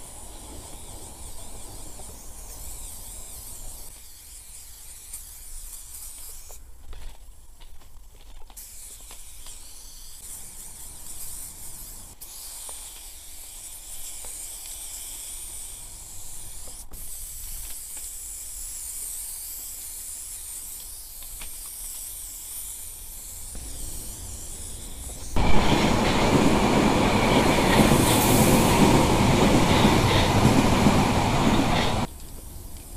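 Aerosol spray paint can hissing as paint goes onto a train's metal side, with a short break early on. About 25 seconds in, a Berlin U-Bahn train suddenly becomes loud as it runs past close by.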